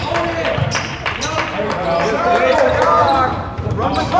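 Basketball bouncing on a hardwood gym floor during play, a run of sharp knocks, with players' and spectators' voices calling out over it.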